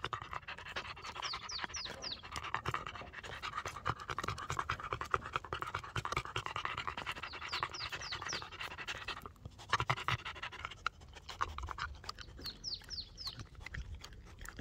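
Dog panting rapidly while it gnaws on food held in a hand, with many sharp chewing clicks.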